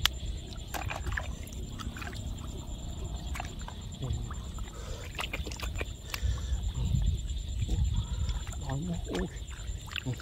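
Shallow water sloshing and trickling, with scattered small clicks, as hands work through the water and mud, over a steady low rumble.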